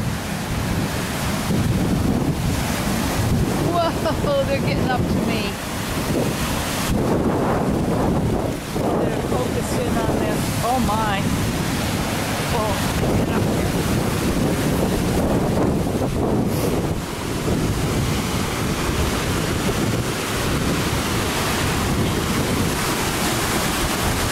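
Large wind-driven lake waves surging and breaking on a rocky shore, with strong wind buffeting the microphone.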